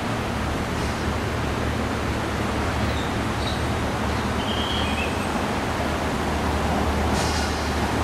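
Steady roar of traffic and car engines, an even noise with a low hum underneath.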